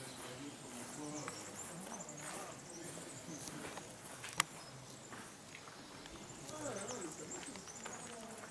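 Outdoor ambience of faint, distant voices talking indistinctly, with footsteps on gravel and one sharp click about halfway through.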